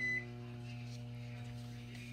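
A short electronic beep right at the start, then a steady low electrical hum with a string of even overtones, holding one pitch throughout.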